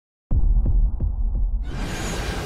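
Intro sound-effect sting: a deep bass drone with four low pulses about three a second, starting a moment in, then a hissing whoosh swelling up near the end.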